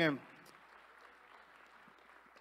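Faint applause from a church congregation, a steady even patter, just after a man's voice ends at the very start.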